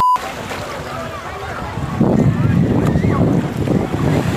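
A short electronic beep at the very start. Then shallow surf washes around the microphone. About two seconds in it gives way to louder wind buffeting the microphone over open water.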